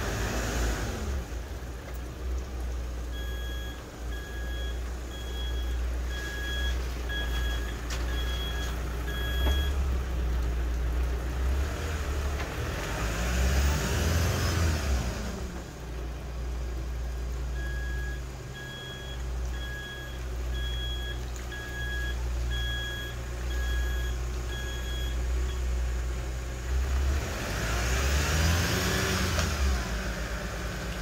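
A vehicle's engine working its way up a steep, muddy track, with a steady low drone that surges twice. Two runs of electronic warning beeps sound over it, a little over one beep a second.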